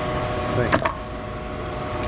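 Steady humming drone of an electric floor fan running. About three quarters of a second in come two sharp clicks, close together, from the metal terminal-removal picks being handled.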